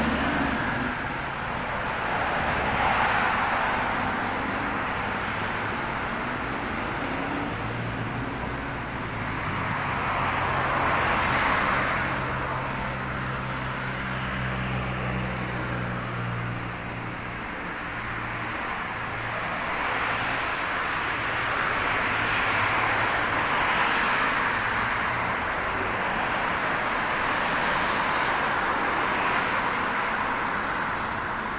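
Road traffic on a city street, with cars passing one after another, each swelling up and fading away. A low engine hum holds for several seconds in the middle, and a faint steady high tone sits underneath.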